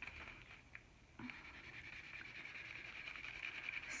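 Faint scratchy rubbing of a felt-tip washable marker coloring on a paper coffee filter, starting about a second in after a small click.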